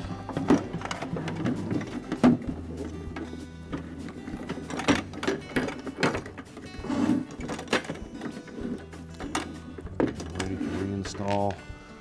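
Plastic ice bin and auger housing parts of a refrigerator ice dispenser clicking and knocking against each other and the workbench as they are handled and laid flat, over soft background music.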